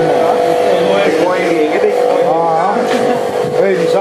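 A motor vehicle's engine running steadily, with voices talking over it.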